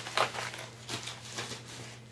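Rustling and crinkling of a shopping bag as makeup items are pulled out of it, in a few short, irregular rustles.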